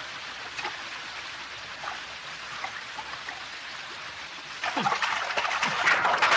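A shallow river running steadily over rocks. About three-quarters of the way through, loud, choppy splashing starts as people move quickly through the water.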